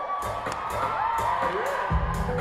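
Concert crowd screaming and cheering over a backing beat with regular high ticks. A heavy bass note comes in right at the end.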